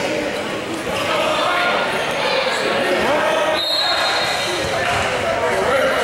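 Basketball game in a gymnasium: indistinct voices of players and spectators echo through the hall over a ball bouncing on the hardwood court. A brief high steady tone sounds about three and a half seconds in.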